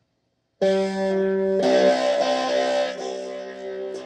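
Cigar box guitar picked: after a brief dead silence, notes struck about half a second in ring out together. A second pick about a second later brings in new notes, which ring and slowly fade.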